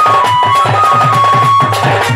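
Live Sambalpuri folk music: fast, regular drum strokes under a high, held melody line that steps from note to note.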